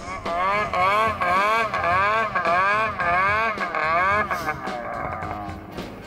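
Snowmobile engine revving up and down over and over, about two swings a second, as the throttle is worked; the revving fades out near the end.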